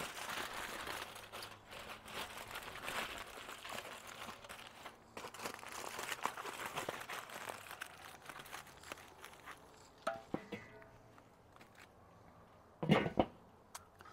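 Aluminium foil crinkling and rustling as a foil-wrapped cut of barbecued meat is handled, through most of the first nine seconds. A few light metallic clinks follow, then one sharp knock near the end.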